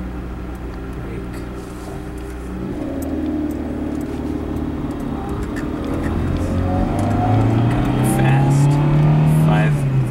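Car engine heard from inside the cabin of a manual car, running steadily at first. Then, from about three seconds in, it climbs gradually in pitch and loudness as the car accelerates in first gear, and drops off just at the end.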